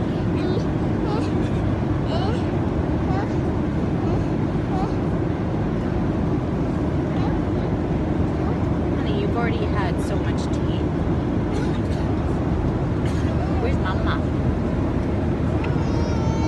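Steady low roar of an airliner cabin, even in level throughout, with a few faint, brief vocal sounds from a small child.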